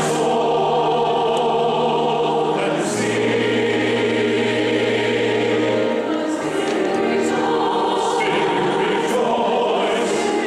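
Congregation singing a hymn in a large hall, led by a small amplified vocal team, in long held notes over a steady low bass line that shifts about every three seconds.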